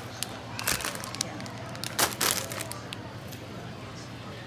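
Plastic snack packets crinkling and rustling as they are handled and put into a shopping cart, in a few short bursts, the loudest about two seconds in, over a steady low hum.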